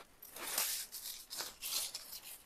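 Plastic freeze-dryer tray dividers being pulled out from between brittle freeze-dried soup squares: soft, dry scraping and rubbing in a few short strokes.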